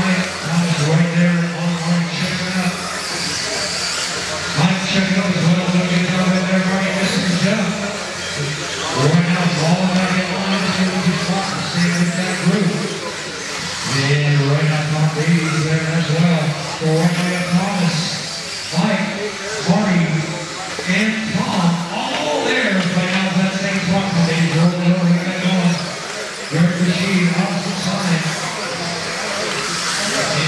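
A race announcer's voice over the PA, echoing and indistinct in a large hall, talking in stretches of a few seconds. Under it are the motors and tyres of electric RC buggies running on the dirt track.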